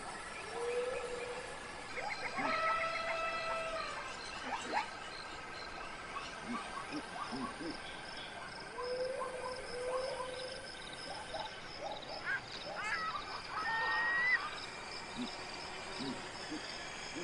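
Animal calls over open-air ambience. There is a short rising-and-falling call just after the start and twice more around nine to ten seconds in, a longer call from about two to four seconds, a thin steady tone through the first half, and a quick run of chirps near the end.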